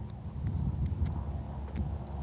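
A few faint clicks and crinkles of adhesive tape being folded between fingers, over a steady low hum.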